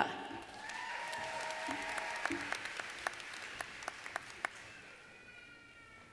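Audience applause with a few individual claps standing out, dying away by about five seconds in, and a brief high call from the crowd near the end.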